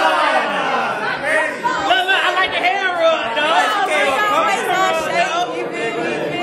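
A group of people talking over one another at once, a loud, continuous jumble of overlapping voices.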